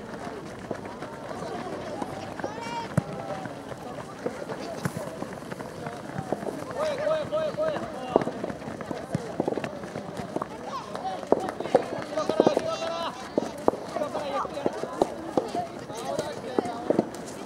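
Voices shouting and calling out across a youth football pitch during open play, some of them high-pitched, with scattered sharp knocks standing out as the loudest moments toward the later part.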